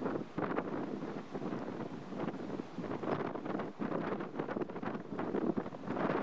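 Wind noise on the microphone, an irregular rushing that rises and falls in level.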